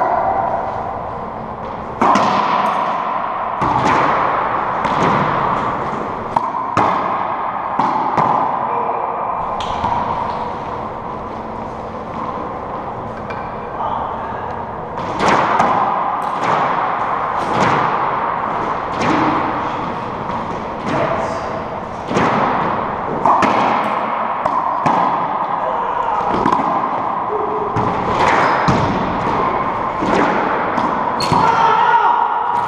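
Racquetball rally: the ball cracking off racquets, walls and floor about once a second, each hit ringing on in the echo of the enclosed court, with a lull in the hitting in the middle.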